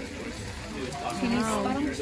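Speech: a voice says "chili", over low restaurant background noise.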